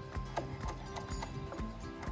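Chef's knife chopping fresh chives on a wooden cutting board: a quick run of sharp knocks, about three to four a second, as the blade strikes the board.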